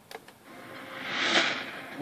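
A game-show sound effect played through a television's speaker: a couple of light clicks at the start, then a rushing swell that builds to a peak about halfway through and falls away, as the quiz question comes up on screen.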